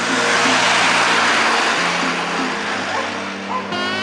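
A city bus passing close by: a loud swell of engine and road noise that dies away near the end, over background music.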